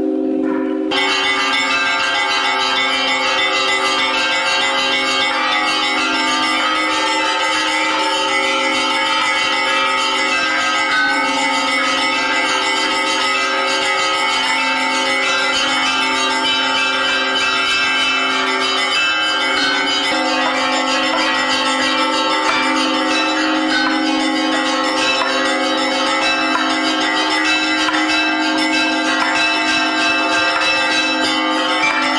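Several church bells ringing together in a continuous, dense peal; the sound fills out with many more tones about a second in and then runs on without a break.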